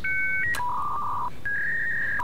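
A short run of electronic beeps at changing pitches, like phone keypad tones: the first two tones sound together, and the last is held about half a second near the end.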